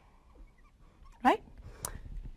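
Mostly quiet room tone, broken by one short spoken word, "right?", rising in pitch, and a single sharp click near the end.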